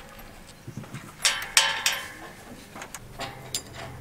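A few light knocks and clinks of metal being handled: aluminium loading ramps and tools on a truck's rear deck. A low steady hum comes in about three seconds in.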